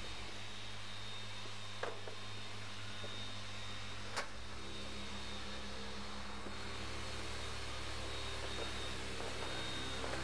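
Several dual-action orbital polishers running together, a steady motor hum as they machine-polish car paint to remove swirls. There are two short, sharp clicks about two and four seconds in.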